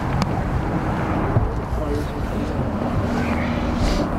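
Low rumbling wind buffeting the microphone, with quiet voices underneath.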